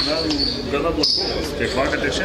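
A basketball bouncing on a hard court, several thuds about two a second apart, under men's voices talking.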